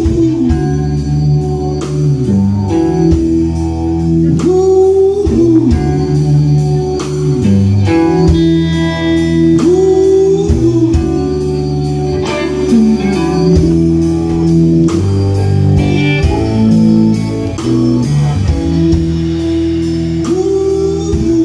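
Live blues band playing an instrumental passage: electric guitar with notes bent up and down, over Hammond organ, electric bass and a steady drum beat.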